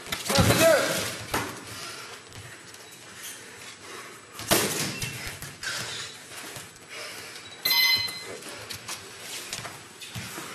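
Boxing gloves thudding on gloves and headgear during sparring, with sharp hits in the first second and again at about four and a half seconds, along with short voiced shouts. About eight seconds in comes a brief electronic beep, the gym's round timer.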